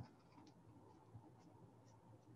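Near silence, with faint scattered ticks and light scratches of a paintbrush dabbing acrylic paint onto paper.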